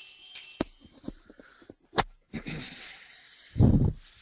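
Scattered sharp clicks and dull low thumps close to the microphone, the sharpest click about two seconds in and a louder, longer low thump near the end.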